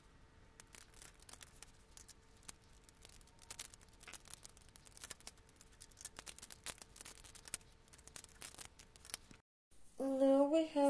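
Faint, rapid, irregular clicking and tapping of plastic Lego bricks being handled and pressed together.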